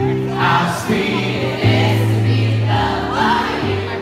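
Live male vocal sung into a microphone over electric keyboard accompaniment, with sustained chords and bass notes, in an upbeat soul song.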